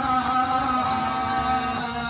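A man chanting Hindu ritual mantras into a microphone in a sung style, holding long, steady notes through the amplification.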